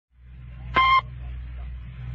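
A single short beep tone, about a quarter of a second long, just under a second in. It sounds over the steady low hum and hiss of a 1941 radio broadcast recording.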